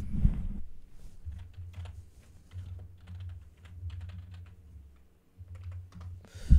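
Typing on a computer keyboard: a run of quick, irregular key clicks while searching for something.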